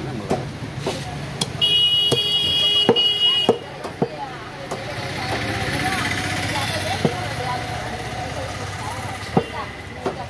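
Butcher's cleaver and knife striking a wooden log chopping block while cutting lamb-head pieces: scattered single knocks, about eight in all. A vehicle horn sounds for about two seconds near the start, over street noise and background voices.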